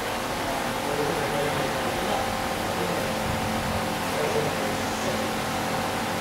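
Steady outdoor background noise: an even rush with a faint steady hum running through it.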